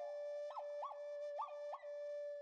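Quiet background music: a flute holding one steady note, broken four times by quick upward flicks in pitch.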